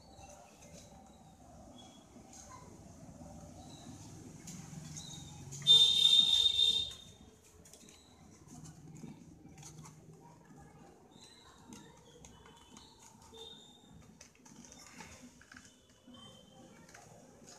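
Faint handling noise of the plastic monitor stand's neck and base being twisted and pulled apart, with small clicks. About six seconds in, one loud, high-pitched squeal lasts about a second.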